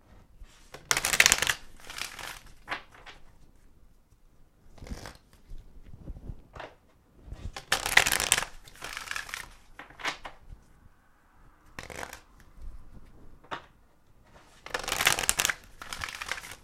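A deck of oracle cards being shuffled by hand in repeated bursts. The longest and loudest shuffles come about a second in, about eight seconds in and near the end, with shorter, quieter riffles and taps between.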